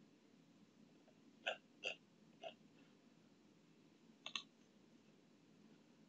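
Near silence broken by a few short clicks: three spaced about half a second apart starting a second and a half in, then a quick double click about four seconds in.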